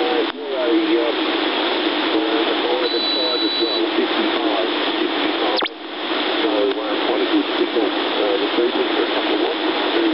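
Receiver audio from the OzQRP MDT 7 MHz double-sideband transceiver on 40 metres: steady band hiss with faint, unclear sideband voices of other stations beneath it. A thin high whistle sounds for about a second near the three-second mark, and the hiss dips briefly with a click twice.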